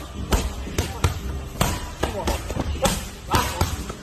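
Boxing gloves cracking against focus mitts in a fast run of punches, about two a second, with shouts between the strikes.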